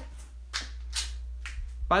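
A pause in a man's talk over a steady low hum, with two brief noisy sounds about half a second and a second in; his voice starts again near the end.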